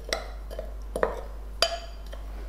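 Metal spoon clinking against a glass mixing bowl while stirring ground spice powder: three light clinks with a short ring.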